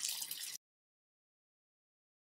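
Hot oil and sesame seeds sizzling in a wok as steamed cabbage dumplings are set into it. The sound cuts off abruptly about half a second in, leaving dead silence.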